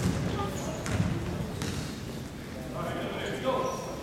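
A basketball bouncing on a hardwood gym floor, a few dribbles about a second apart, with voices of players and spectators in the large hall.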